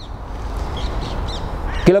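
Steady low outdoor rumble with a few faint, short bird calls through the pause.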